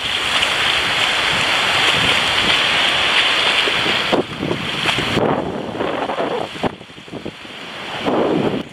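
Small waves breaking on a sandy beach, with wind on the microphone. The noise is loudest for the first half, eases about halfway through and dips low shortly before the end.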